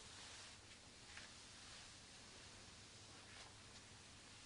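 Near silence: faint room tone, with one or two faint soft ticks.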